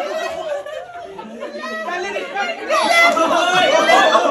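Several people talking over one another in a room, an indistinct chatter of overlapping voices that grows louder about three seconds in.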